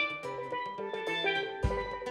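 A live band playing an instrumental passage, led by a steel pan picking out a melody over a drum kit, with a kick drum hit near the end.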